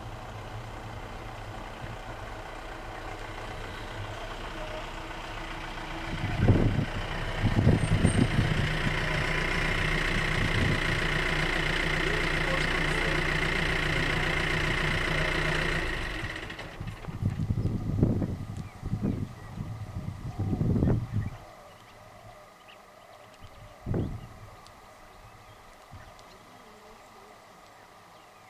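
A vehicle engine running steadily, growing louder over about fifteen seconds and then stopping fairly suddenly. Several low thuds come through, some while it runs and a few after it stops.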